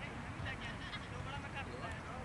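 Indistinct distant voices of people talking, over a steady low rumble.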